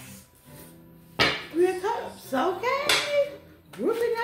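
A voice singing a short melodic phrase, starting about a second in after a brief lull.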